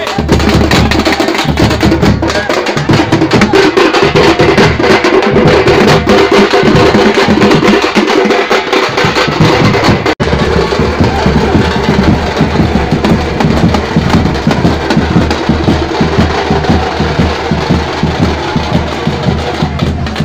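Loud, dense street drumming from a troupe of hand-beaten drums in a festival procession, the beats running fast and continuous, with a momentary break about halfway through.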